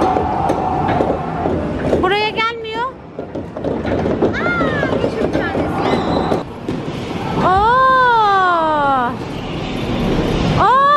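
Busy amusement-arcade noise: a steady din with many clicks and clatters, overlaid by electronic game sounds, including a warbling tone about two seconds in and a long sound that rises and then falls in pitch near the end.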